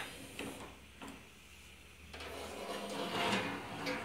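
Esmaltec Ágata gas stove being shut down: a faint click about a second in as the oven knob is turned off, then rubbing and scraping that grows louder over the last two seconds as the oven door is swung shut.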